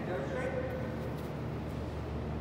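Steady low background hum of a large indoor room, with a brief faint voice about half a second in.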